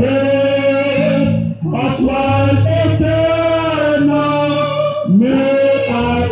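A man and a woman sing a slow gospel hymn into microphones, in long held notes, over an electric bass guitar.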